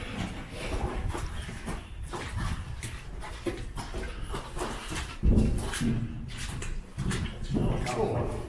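Footsteps and clothing scuffs of several people walking through a passage, with a heavier thump about five seconds in and brief low voices.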